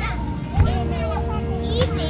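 Children's voices and chatter outdoors over background music with long held notes and a steady low bass. Two short knocks come about half a second in and near the end.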